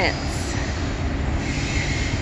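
Double-stack intermodal container train rolling past, its wheels and cars making a steady low rumble, with a faint high wheel squeal near the end.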